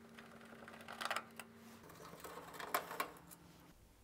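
Faint clicks and light scraping of a Phillips screwdriver turning a screw out of an oven's metal control panel, in small clusters about a second in and again near three seconds, over a faint steady hum.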